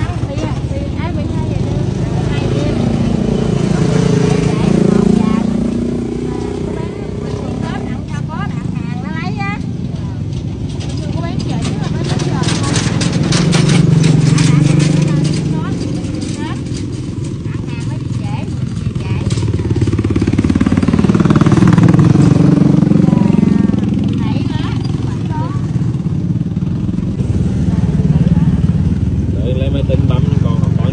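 Motorbikes and other vehicles passing on the road one after another, each swelling and fading over several seconds, four passes in all. About halfway through there is a burst of crackling, like plastic bags of vegetables being handled.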